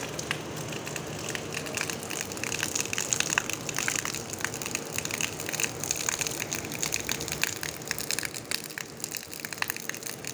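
Steady rain falling on a paved sidewalk and wet yard, a dense crackle of drops hitting hard, wet surfaces.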